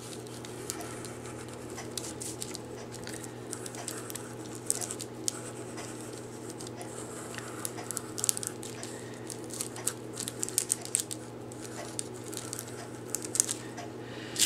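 Number two pencil scratching in short, irregular strokes over tracing paper laid on fabric, redrawing lines to transfer the graphite on the paper's back by pressure.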